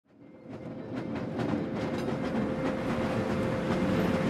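Ride noise from inside a moving city transit vehicle: a low rumble with knocks and rattles under a steady humming tone. It fades in over the first second.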